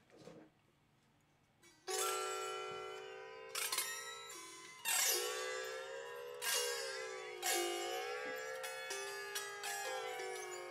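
A wooden zither-type string instrument played in chords: after a quiet start, about six chords ring out across its strings, each left to ring on and fade before the next.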